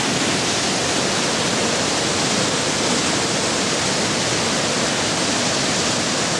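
Water pouring out of a dam's gate and churning over rocks below: a loud, steady rush of white water.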